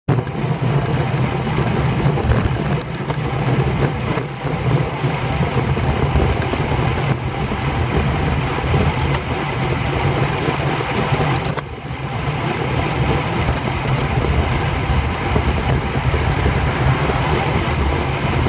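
Wind rushing over the microphone of a bicycle-mounted camera at about 25 mph, mixed with the tyres rolling on the road: a loud, steady, low rumble that dips briefly about two-thirds of the way through.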